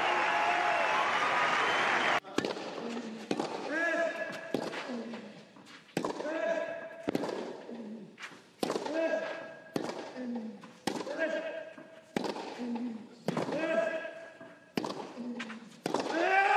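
A crowd cheers loudly for about two seconds, then cuts off suddenly. A clay-court tennis rally follows, with the ball struck by the rackets about once a second, each stroke followed by a player's grunt.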